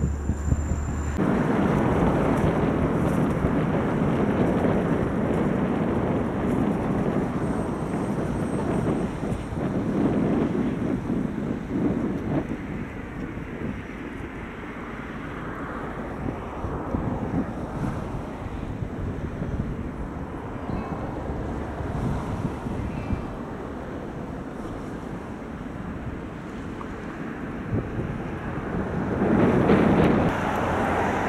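Wind buffeting the microphone in gusts: a rushing noise that swells and eases, strongest in the first dozen seconds and rising again near the end.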